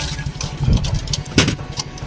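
A motor vehicle's engine running with a steady low rumble, with a few sharp knocks and clatters, the loudest about one and a half seconds in.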